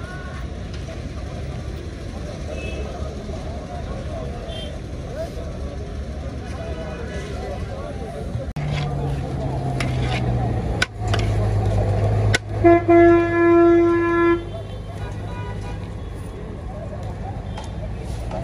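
Busy street traffic with a steady engine hum and background chatter; about two-thirds of the way in, a vehicle horn honks for about two seconds, the loudest sound.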